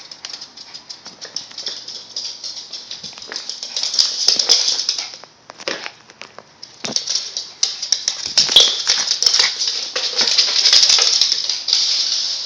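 A small Yorkshire terrier's claws clicking and scrabbling on a hardwood floor: a quick run of light clicks, with louder scratchy stretches about four seconds in and again from about seven seconds on.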